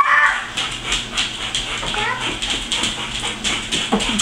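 A dog's claws clicking in a quick, uneven patter on a tile floor as it walks round and round, with a short high-pitched squealing cry right at the start and a fainter one about two seconds in.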